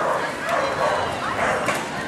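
A dog barking several short times, with people's voices in the background.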